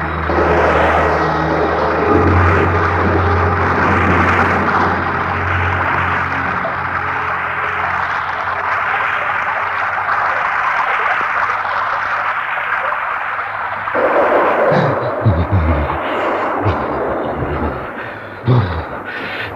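Steady hiss of a heavy rain sound effect, with a low music drone underneath that ends about six seconds in. About 14 seconds in the rain thins and a few low vocal sounds come in.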